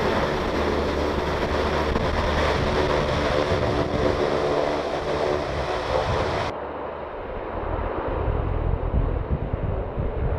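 A Navy LCAC (landing craft, air cushion) hovercraft running close by: its gas turbines, lift fans and ducted propellers make a loud, steady roar with a faint hum of steady tones. About two-thirds of the way through, the sound changes suddenly to a duller, more distant rumble with wind buffeting the microphone.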